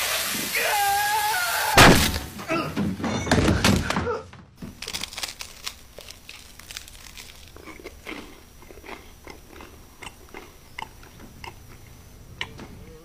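A voice cries out and a frying pan is brought down hard on a man's head about two seconds in, the loudest sound. After that come irregular crunches of someone biting and chewing crisp toast.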